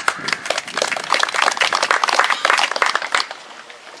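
Applause from a small crowd, many overlapping hand claps that die away a little over three seconds in.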